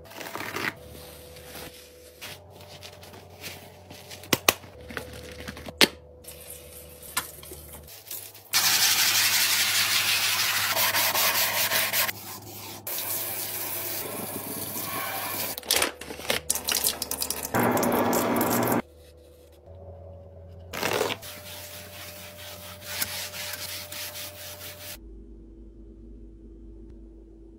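Household items being handled during restocking, in a run of short clips: scattered clicks and taps and rubbing or rustling of packaging, with a loud steady rushing noise for about three seconds about a third of the way in.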